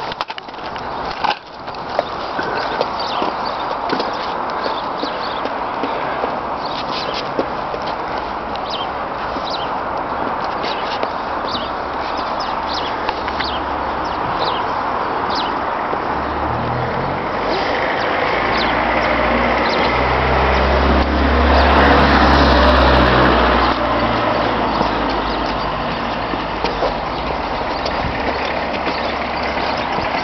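Steady outdoor road-traffic noise, with a motor vehicle passing: its low engine rumble builds up past the middle, is loudest about two-thirds of the way through, then fades. Light clicks and taps run through the first half.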